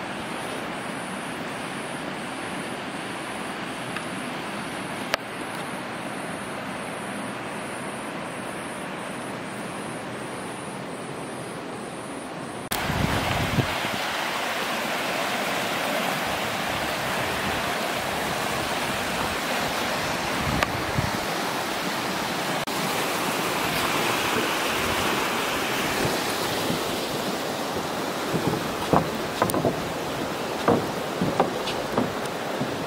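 River water rushing over shallow rapids: a steady rushing noise that suddenly gets louder and brighter about halfway through. A few light knocks come near the end.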